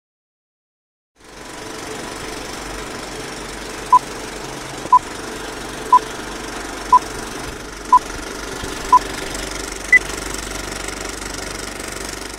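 Film-leader countdown sound effect: a steady film-projector whir that starts about a second in, with a short beep each second, six in a row, then one higher-pitched beep about ten seconds in.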